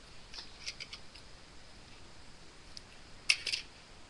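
Small handling noises of craft materials: a few light clicks and crinkles, then a sharper cluster of clicks and rustling about three seconds in.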